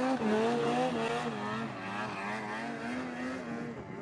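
Snowmobile engine running under throttle through deep powder, its pitch rising and falling as the rider works the slope, growing somewhat fainter toward the end.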